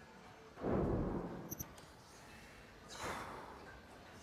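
Bowling lane sounds just after a strike. About half a second in there is a low rushing clatter that fades over roughly a second, and near the end a shorter, higher rush of noise.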